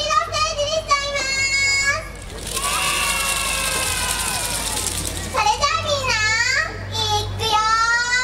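Young girls' high-pitched voices calling out together in short shouts, with a longer stretch of many voices at once from about two and a half to five seconds in.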